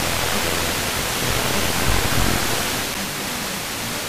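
Loud steady hiss of an FM radio receiver with no station coming through: a software-defined radio's wideband FM demodulator tuned to an empty spot near 67 MHz. A low rumble under the hiss drops away about three seconds in.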